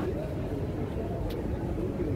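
Terminal ambience: a steady low rumble with faint, indistinct distant voices, and one short click just over a second in.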